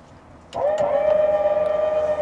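A fifth wheel's auto-leveling system switching on about half a second in, starting with a click and then running with a loud, steady whine as it begins levelling the trailer.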